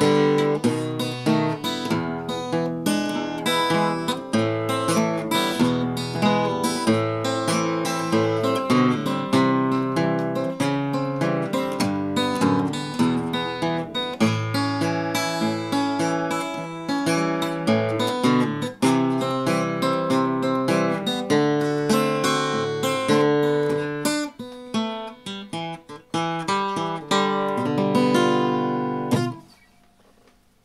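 Mid-1960s Harmony H165 all-mahogany acoustic guitar fingerpicked, a continuous run of single notes and chords. The playing stops about a second before the end.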